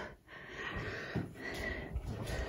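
Quiet room noise with soft breathing close to the microphone.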